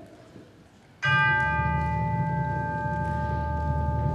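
A concert band begins a piece about a second in with a single struck bell tone left ringing over a steady low note from the band's low instruments.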